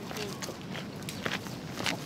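Footsteps of two people jogging slowly in running shoes on asphalt, a few separate footfalls at uneven spacing.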